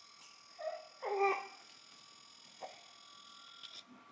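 Young infant cooing: a short coo, then a longer one about a second in.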